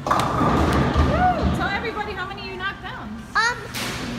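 Bowling ball thudding onto the lane and rumbling for about a second and a half, while a child makes high, sliding vocal sounds.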